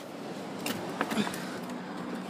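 A minivan's front door being opened and someone climbing out: a steady faint hiss with a few light clicks and knocks about halfway through.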